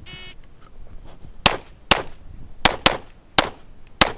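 A shot timer's start beep sounds briefly at the outset. About a second and a half later a Springfield XD(M) pistol with a red-dot sight fires five shots: a pair, another quicker pair, then a single.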